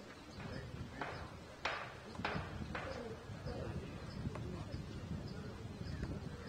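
Open-air ambience with faint distant voices and a run of four sharp knocks, about two a second, in the first three seconds.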